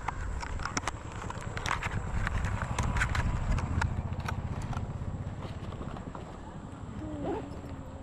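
Close handling of a clear plastic lure box: scattered sharp clicks and taps as the small frog lure is taken out, over a low steady rumble.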